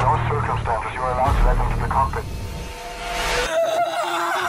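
A man's voice speaking over a low steady drone for the first two seconds; near the end a short rising whoosh, then the sound cuts out abruptly.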